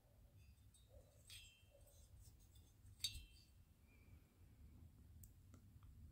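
Near silence with faint clicks and light handling noise as a metal chainsaw cylinder is turned over in the hand. One sharper click comes about three seconds in.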